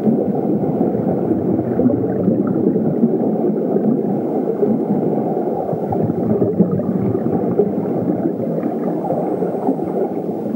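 A steady, muffled low rumbling noise with no clear tone or beat.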